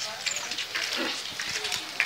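Background chatter of several voices, with light rustling.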